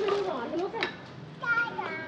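Children's voices: short bits of high-pitched chatter and calling, in three or four brief bursts.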